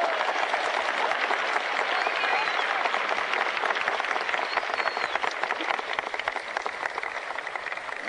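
A large crowd applauding, a dense clatter of many hands that eases off slightly toward the end, with a few voices calling out over it.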